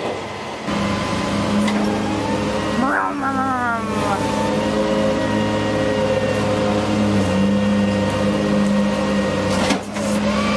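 Flatbed tow truck's engine and hydraulic system running with a steady hum as the loaded tilt bed is lowered level. The pitch slides briefly downward about three seconds in.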